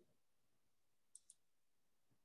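Near silence: room tone, with two faint quick clicks close together a little over a second in.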